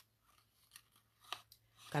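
A pause in a woman's speech: a few faint, short clicks over quiet room tone, then her voice starts again near the end.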